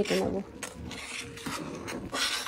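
Metal spatula scraping and stirring in a stainless-steel pan of milk curdling with lemon juice into chhana: a rasping scrape that comes and goes with each stroke.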